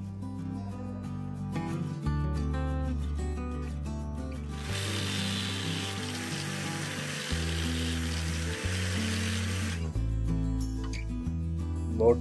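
Background music throughout. From about five to ten seconds in, an angle grinder fitted with a sanding disc sands wood, a steady rushing noise over the music that cuts off abruptly.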